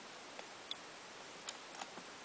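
A few faint, sharp clicks at uneven intervals over a steady hiss.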